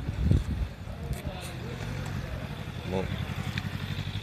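A vehicle engine running steadily at low revs, a low rumble, with a low thump just after the start.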